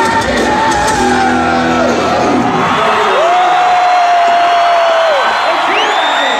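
Loud rock band playing live with a singer; about three seconds in the singer slides up into one long held note that drops away about two seconds later.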